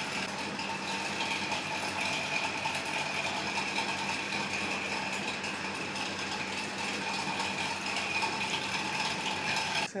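Electric sewing machine running steadily, its needle mechanism clattering rapidly over the motor's hum.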